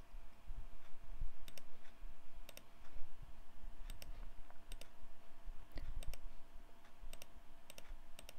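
About seven separate computer clicks at uneven intervals, most of them a quick double tick, as keys are entered one by one into a TI-84 Plus calculator emulator. A faint steady hum lies underneath.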